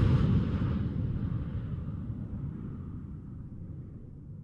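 Low rumbling tail of a fly-by whoosh sound effect, fading steadily away after the aircraft has passed.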